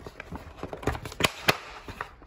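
A few sharp taps and knocks at uneven intervals, the loudest two about a quarter of a second apart past the one-second mark.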